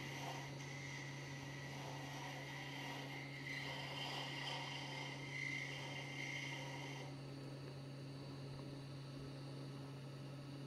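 Wood lathe running with a steady low hum while a small carbide-tipped Easy Wood pin-turning tool takes a light scraping cut on a spinning finial. The faint hiss of the cut stops suddenly about seven seconds in, and the lathe hum carries on.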